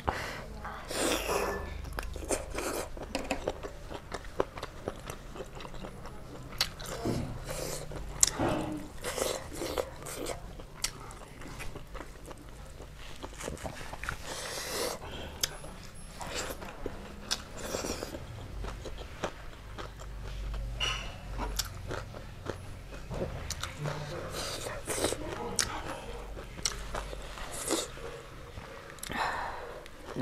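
Close-miked chewing and mouth sounds of a person eating rice and meat by hand, with many irregular sharp wet clicks and smacks.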